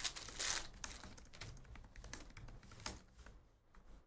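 A foil trading-card pack torn open with a crinkling rip in the first second, followed by a run of light clicks and ticks as the cards inside are slid out and flipped through by hand.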